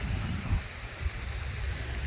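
Wind rumbling on the microphone outdoors, a low uneven buffeting with a couple of soft thumps.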